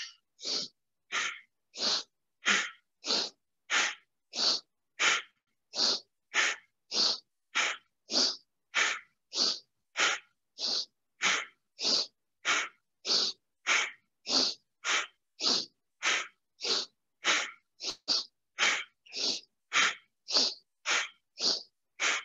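A woman's rapid, forceful breathing in a yoga breath-of-fire exercise: sharp, hissy exhalations in a steady rhythm of about one and a half a second, with near silence between them.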